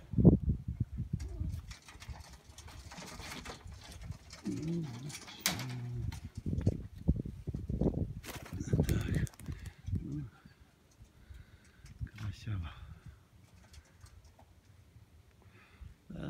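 Domestic pigeons cooing in low, repeated phrases, dying down over the last few seconds, with some faint rustling.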